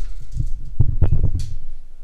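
Handling noise: a run of low thumps and knocks, with a sharp click about a second and a half in, fading out near the end.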